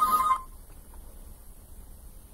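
Telephone ringing with an electronic tone that stops about a third of a second in, as if answered; then only faint room noise.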